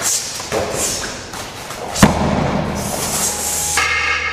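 A body thrown onto a padded martial-arts mat: one heavy thud about two seconds in as a partner is taken down in a Hapkido throw.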